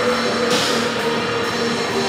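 Funeral doom metal band playing live: slow, held chords on distorted electric guitar and bass, with a cymbal crash about half a second in.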